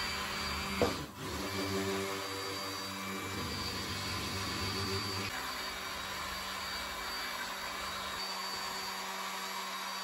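Electric immersion (stick) blender running steadily in a stainless steel bowl of oils, mixing cold-process soap batter. Its tone shifts a little about five seconds in.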